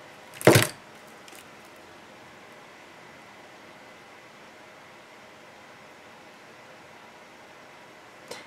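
A single sharp knock about half a second in, then quiet room tone with a faint tick or two from small handling at a work table.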